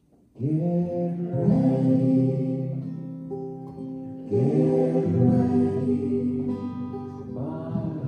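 A song starting suddenly about a third of a second in: acoustic guitar strummed with voices singing held notes, swelling again twice with the start of each new line.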